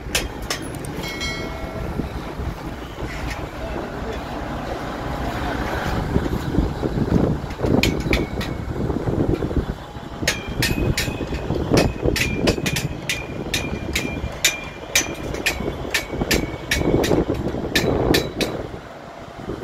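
Regular hammer blows, about two or three a second, each with a short metallic ring, begin about eight seconds in and grow steady from about ten seconds. They sound over a continuous rumble of wind and construction-site noise.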